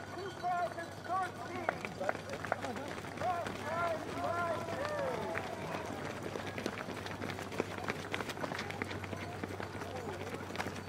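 Footfalls of many runners on pavement as a pack of race runners passes close by, the sharp footsteps growing denser in the second half. Spectators' voices and short cheers come through over them, mostly in the first half.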